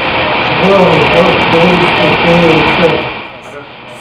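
Indistinct speech from an operating-room recording made during awake brain surgery, over a loud steady hiss. Both drop away about three seconds in.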